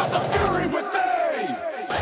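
A hardstyle track in a DJ mix breaks down: the kick and bass drop out and a shouted vocal sample slides steeply down in pitch, and the beat comes back near the end.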